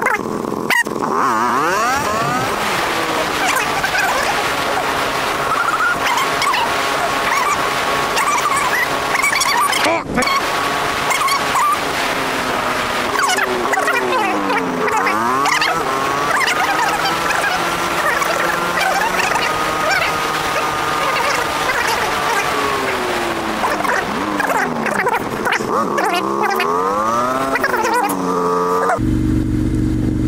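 Motorcycle engine heard from the rider's seat. Its pitch climbs as it pulls away, holds a steady note at cruising speed, dips and climbs again about halfway through, and sweeps up and down again later, with steady wind rush on the microphone. Near the end the sound changes abruptly to a lower, steady hum.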